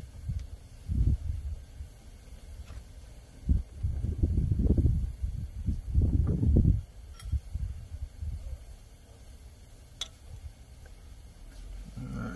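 Low muffled rumbling in irregular bursts, loudest from about four to seven seconds in, with a few small sharp clicks of a screwdriver and pliers prying at a jake brake solenoid connector on the engine's top end.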